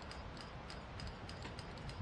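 Maintenance-of-way rock train's conveyor car rolling slowly past on the rails: rapid, even ticking of about five or six sharp clicks a second over a low rumble.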